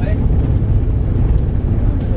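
Low, steady rumble of a moving road vehicle, with no voices over it.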